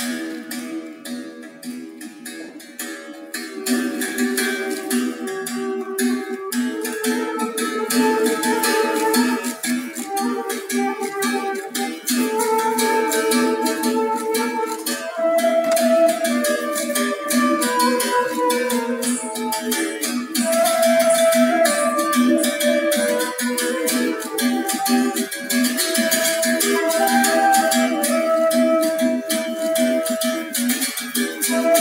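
Berimbau struck with a stick in a quick, steady rhythm, its wire sounding through the gourd, while a flute plays a moving melody over it.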